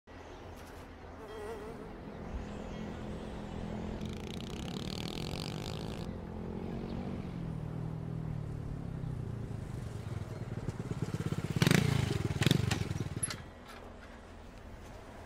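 A motorcycle engine approaching, its pitch dropping as it slows, with two loud revs near the end before it cuts off.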